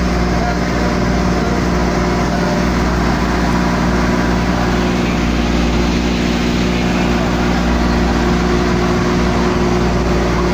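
Engine of a motorised outrigger boat (bangka) running at a steady drone while under way, over a constant rush of water and wind.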